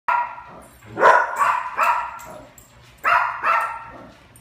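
Dogs barking, about six short, sharp barks in two bursts, eager for their dinner.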